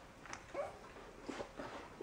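Faint, scattered little sounds of a puppy licking his owner's face and hands ("kisses") while being petted on a lap: a few soft, short clicks and smacks spread through the two seconds.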